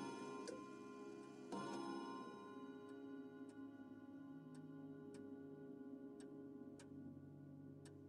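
Faint, slow clock ticking, with bell-like chime tones that ring and fade over the first few seconds, one struck about one and a half seconds in.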